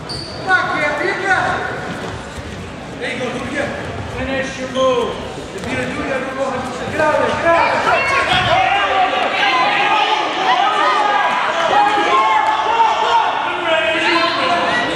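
Several people shouting and calling out at once in a gymnasium, the voices overlapping and getting busier about halfway through, with a sharp knock about half a second in.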